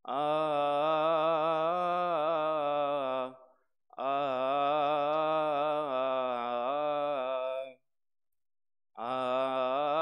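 A voice chanting a Coptic Orthodox Pascha hymn in long held, ornamented phrases. There are three phrases, each broken off by a brief pause for breath, with pauses about three seconds in and again near eight seconds.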